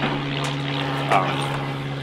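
A steady, low motor drone.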